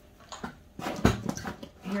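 Hard plastic toy train track pieces knocking together and rustling as they are lifted out of a cardboard shoebox, a few short clacks with one louder knock about halfway.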